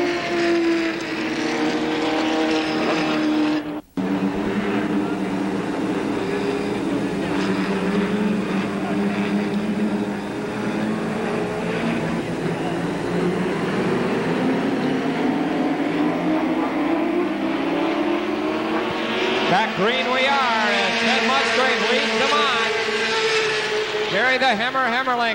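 Several late model stock car engines racing around an oval, their pitch rising and falling as the cars come past. The sound cuts out for a split second about four seconds in.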